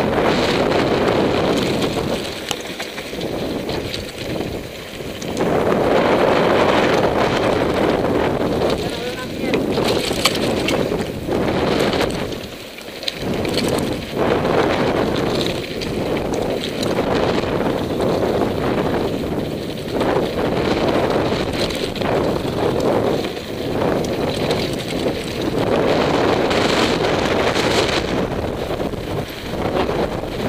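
Wind buffeting the microphone of a camera on a mountain bike riding fast down a rough gravel trail, mixed with tyre crunch and the rattle and knocks of the bike over the bumps. It swells and drops with the pace, easing off twice.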